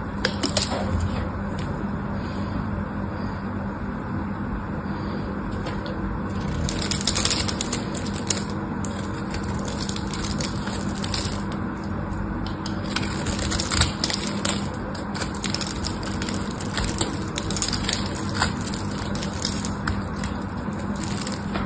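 A craft knife blade scoring and cutting into a bar of soap: scratchy, crackling strokes that come in bursts, with small sharp clicks, over a steady low hum.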